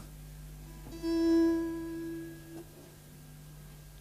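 A single musical instrument note struck about a second in, one steady pitch with a clear ring, fading away over about a second and a half.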